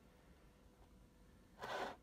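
Quiet room tone, then one short breathy burst of noise near the end, like a person's exhale.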